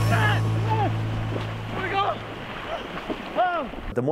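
Two people splashing and churning through near-freezing Arctic seawater, with several short yells over the splashing.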